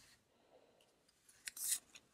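Baseball trading cards sliding against each other as one is moved through the stack, a brief soft swish with a click about a second and a half in, after a quiet stretch.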